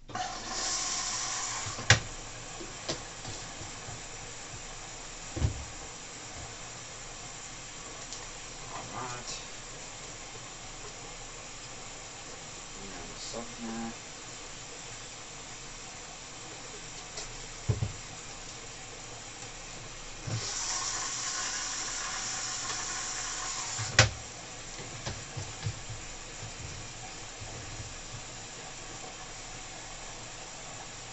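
LG Inverter Direct Drive 9 kg front-loading washing machine filling for the main wash, with water hissing in through the detergent drawer. The hiss is louder in the first two seconds and again for a few seconds about two-thirds of the way through. Occasional single thuds come from the drum tumbling the wet laundry.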